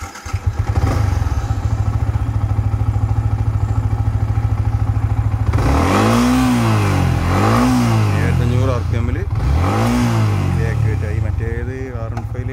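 Yamaha MT-15's 155 cc liquid-cooled single-cylinder engine with VVA, started at the very beginning and settling into a steady idle. Just past halfway it is blipped three times, each rev rising and falling back to idle.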